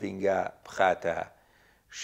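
A man speaking in short phrases, then a pause of about a second that ends in an audible intake of breath.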